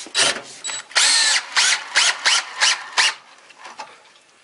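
DeWalt DCD780M2 18V cordless drill/driver with a socket bit running on hex-head bolts in a wooden block. The motor runs in bursts: one longer run about a second in, then a quick series of short trigger pulses.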